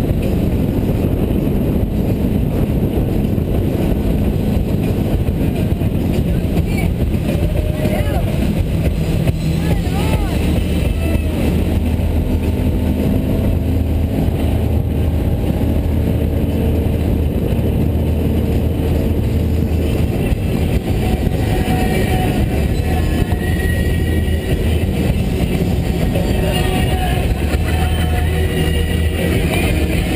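Motorboat engine running steadily at slow cruising speed, a constant low drone.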